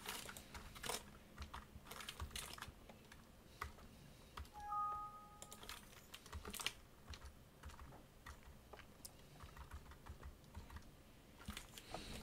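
Faint, scattered computer keyboard clicks. A short two-note electronic chime sounds about four and a half seconds in.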